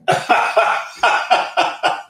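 A man laughing hard: a loud run of breathy bursts, about three or four a second.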